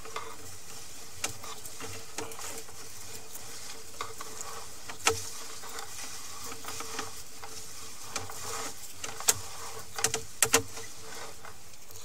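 Sewer inspection camera's push cable being fed down the drain line: scattered sharp clicks and knocks over a steady hiss and faint hum, the loudest clicks about halfway through and near the end.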